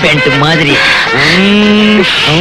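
A singing voice in a film song: a short gliding phrase, then one long held note from about a second in.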